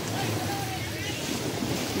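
Waves washing onto the beach with steady wind on the microphone, and faint voices of people in the background.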